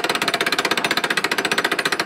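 Hand-crank winch being cranked steadily, its ratchet lock lever clicking over the gear teeth in a rapid, even train of about fifteen clicks a second.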